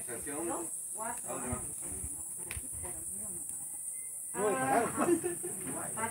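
People talking in Spanish with a steady, high-pitched insect chorus running underneath.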